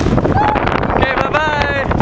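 Strong wind buffeting the microphone in a steady rumble. A high-pitched voice calls out briefly about half a second in, then again in a longer, wavering call after about a second.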